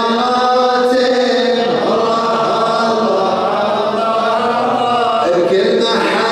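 A man's solo voice chanting Arabic devotional poetry into a microphone, in long held notes that waver and slide in pitch.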